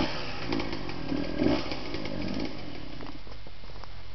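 Dirt bike engines revving and running under load on a hill climb, with a few louder swells in the first half and fading after about three seconds.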